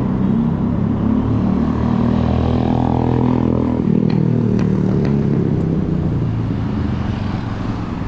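A motorcycle engine passes close by on the road alongside. It builds to its loudest about three seconds in and fades away after four, over a steady low rumble of city traffic.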